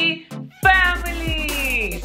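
An added sound effect: a sudden deep bass hit about half a second in, joined by a long pitched, meow-like tone that slides steadily downward over more than a second.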